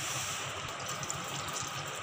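Full-cream milk being poured in a steady stream into a ghee-greased kadhai.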